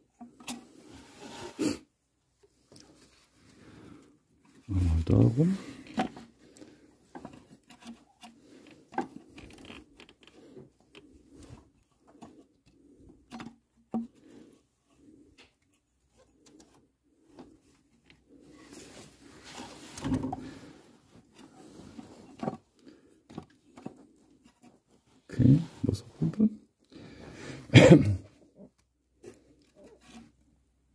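A man's low muttering and effortful grunts, in several short bursts, while hands and tools work on the engine's timing belt area. Small clicks and rustles of the belt and metal parts being handled sound between them.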